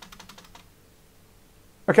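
Computer keyboard key presses: a quick run of sharp clicks over the first half second, the space bar being tapped to step the backtesting chart forward bar by bar.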